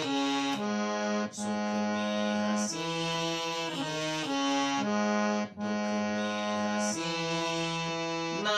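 Harmonium playing a slow melody: held notes that change every second or so over a steady lower note, with two short breaks between phrases.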